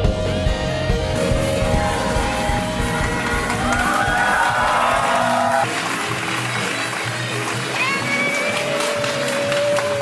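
Saxophone quartet with drums and a rhythm section playing live jazz-pop. A little past halfway the bass end drops away, leaving higher held notes.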